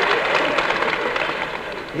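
Audience applause and laughter after a comic punchline, dying away gradually.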